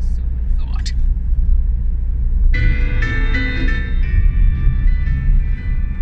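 Music from the car stereo comes in about two and a half seconds in, with held notes heard inside the cabin. Under it runs the steady low rumble of the moving car, from its 2.0-litre turbo diesel engine and road noise.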